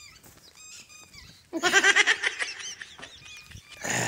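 A farm animal's call, loud and wavering, about a second and a half in and lasting about a second, with small birds chirping faintly around it.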